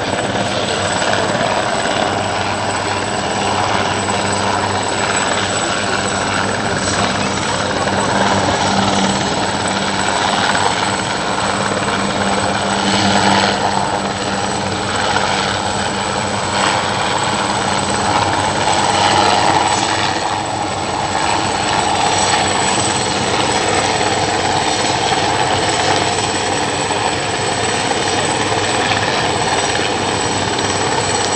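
Helicopter hovering close by: loud, steady rotor and engine noise with a low, even hum.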